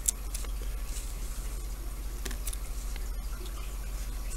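Scissors snipping through a cotton wick once, just at the start, followed by a few faint handling clicks over a steady low hum.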